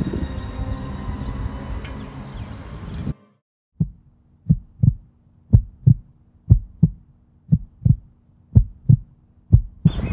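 Background music that cuts off suddenly about three seconds in, followed by a heartbeat sound effect: paired low thumps about once a second, a suspense beat laid over the footage.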